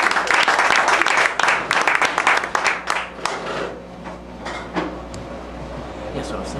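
Audience applause, thinning out and dying away about halfway through and leaving quieter room noise.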